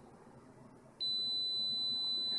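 Kaiweets KM601 digital multimeter's continuity beeper sounding one steady high-pitched beep that starts about a second in, with the test probe tips held together: the meter is signalling continuity.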